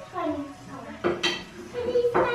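Dishes and cutlery clinking on a table, with one sharp ringing clink about a second in and another near the end, over low voices.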